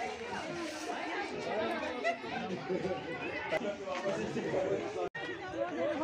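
Many people talking at once: overlapping chatter of several voices with no one voice standing out. The sound drops out for an instant about five seconds in.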